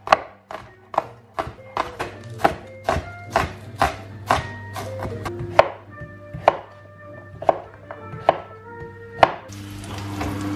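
Kitchen knife chopping spring onions and then a courgette on a wooden chopping board. Sharp knocks come about two a second, slowing to about one a second in the second half, over background music. A steady hiss starts just before the end.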